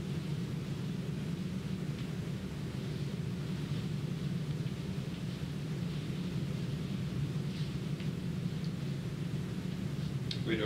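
Steady low hum of background room noise, with a few faint ticks.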